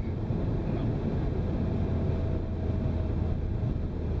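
Renault Mégane RS250's turbocharged 2.0-litre four-cylinder engine and tyre noise heard inside the cabin: a steady low drone while driving at an even pace.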